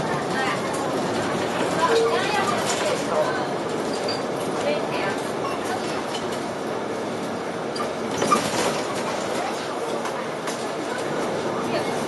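Inside a King Long KLQ6116G city bus on the move: steady engine and road noise with cabin rattles, and indistinct passenger voices. A sharp knock sounds a little past the middle.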